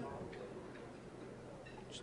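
Quiet room tone in a pause between announcements: a faint steady low hum and a couple of faint ticks.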